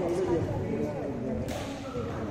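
Indistinct voices talking in a large hall, with one sharp tap about one and a half seconds in.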